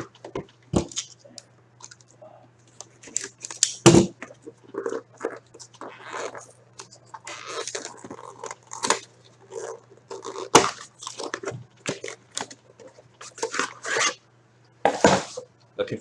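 Plastic shrink-wrap crinkling and tearing and a cardboard sleeve sliding off as a sealed 2014-15 The Cup hockey box is opened by hand. Irregular rustles and handling knocks, with one louder thump about four seconds in, run over a steady low hum.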